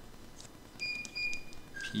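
A stylus tapping and scratching on a tablet screen while handwriting, with a few light clicks and two short, high squeaky tones about a second in.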